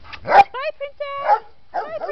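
Dogs barking and whining: a loud bark just under half a second in, then short yelps and a held whine.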